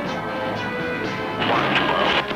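Background music with held chords, then a loud crash about one and a half seconds in.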